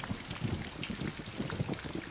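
Steady rain falling, heard as a dense patter of drops.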